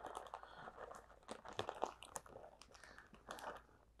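Plastic zip-top bag crinkling faintly as cooked rice and quinoa is shaken out of it onto a metal tray, with scattered small ticks and rustles.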